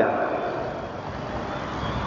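A pause in a man's talk, filled with steady background noise; the end of his last phrase fades out at the very start.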